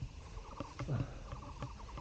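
A cow lowing once, a short low call falling in pitch about a second in, over a faint rapid chirping.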